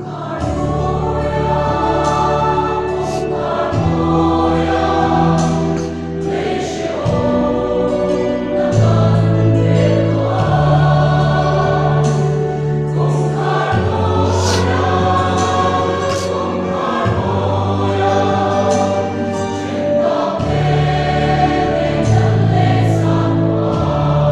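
Large mixed church choir singing a hymn in parts, over sustained electronic keyboard chords in the bass that change every second or few.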